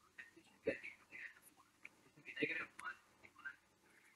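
Faint speech from a person away from the microphone, in a few short, quiet phrases, the clearest about a second in and again about two and a half seconds in.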